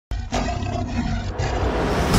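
Intro sting for a logo reveal: a lion's roar sound effect over cinematic music, starting abruptly with a deep rumble underneath.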